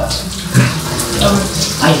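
Shower running: a steady spray of water in a tiled shower.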